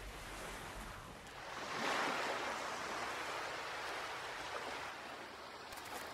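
Sea waves washing onto a sandy beach: a swell of surf builds about two seconds in, then settles into a steady wash.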